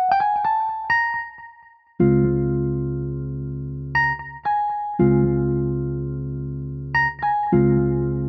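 An Omnisphere keyboard patch playing back a programmed pattern from FL Studio's piano roll. Short high melody notes answer sustained full chords that come in every few seconds.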